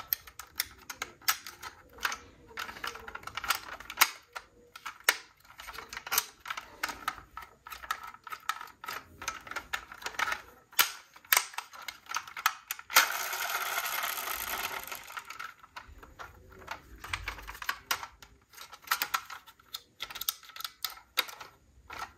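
Irregular small clicks and taps of a diecast metal model pickup truck being handled, its plastic doors and parts clicking as they are moved and snapped shut. About thirteen seconds in there is a couple of seconds of denser rustling and scraping.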